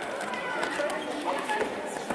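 Indistinct background chatter of people in a hall, with a few faint knocks.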